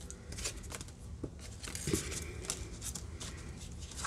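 Paper and a plastic stencil being handled on a craft table: faint rustling with a few light taps and clicks.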